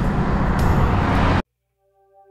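Wind buffeting the microphone, with road noise, as the bicycle rides along. It cuts off suddenly about a second and a half in, leaving near silence, and soft guitar music just begins to fade in at the very end.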